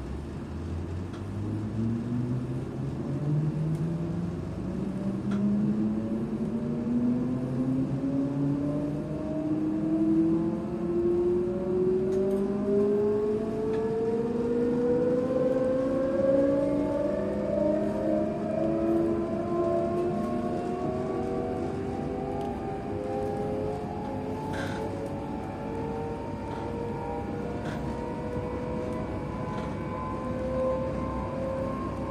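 Electric train's traction motors whining as it accelerates from low speed. Several tones climb steadily in pitch over about twenty seconds and then level off, over a steady running rumble.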